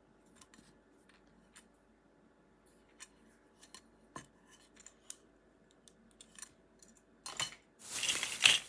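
Faint scattered clicks and taps of a metal pinback button being handled and turned over, with fingernails against its tin back and pin clasp. Near the end comes a short, louder rustle.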